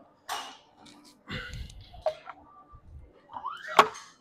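Cast-iron weight plate being carried and handled at a bench press bar: scattered scuffs and knocks, then a short squeak and a sharp metal clank near the end, the loudest sound.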